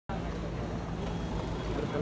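Street traffic: vehicle engines running at low speed with a steady low hum, with people's voices in the background near the end.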